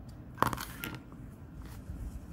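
Scissors snipping a strand of yarn: one sharp snip about half a second in, then a fainter click.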